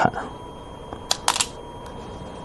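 Go stones clicking on a wooden Go board as they are handled: a short cluster of sharp clicks a little after one second in, and a faint tick near the end.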